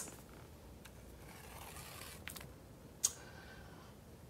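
Quiet: a tennis ball rolling softly down a cardboard ramp onto a tiled floor, then one short sharp tap about three seconds in as it bumps into small wooden blocks.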